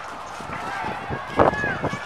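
Footsteps on asphalt with indistinct voices of people in the background, one louder vocal burst about halfway through.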